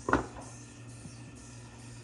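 Kitchen faucet running water into a stainless steel bowl, a steady, faint rush, under quiet background music.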